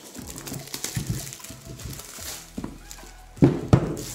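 Plastic shrink wrap crackling and rustling as it is pulled off a cardboard board-game box, with two loud sharp noises about a third of a second apart near the end.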